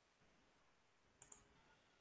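Near silence with two faint computer-mouse clicks close together a little over a second in, as a participant is unmuted in the video call.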